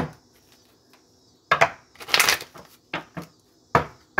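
Cards being handled and shuffled: a sharp tap, then a few short, rustling bursts of cards.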